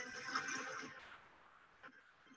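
Faint background music of a narrated explainer, fading out about a second in, then near silence.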